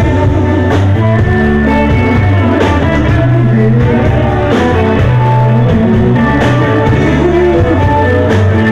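Power-pop rock band playing live: electric guitars, bass and drums with a sung vocal, loud and steady, heard from out in the crowd.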